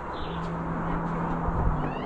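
Small birds chirping in woodland: short high downward chirps at the start and a quick cluster of falling chirps near the end. A steady low hum runs underneath, and a low thump comes about a second and a half in.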